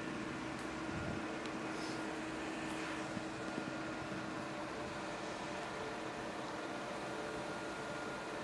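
Steady room hum and hiss with a constant low tone, like an electric fan running. A low bump about a second in and a few faint clicks in the first three seconds.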